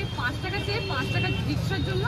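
Busy city street traffic: a steady low rumble of engines from passing rickshaws and motorbikes, under a woman talking.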